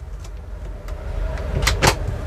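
Mirrored wall cabinet in a camper van's shower room being opened by hand: two quick sharp clicks of its catch near the end, over a low steady hum.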